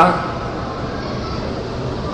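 Steady background hiss with a faint low hum in a pause between a man's spoken sentences, his voice trailing off at the very start.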